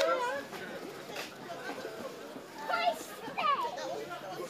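Young children's voices: a few short, high-pitched calls and exclamations, with indistinct chatter around them.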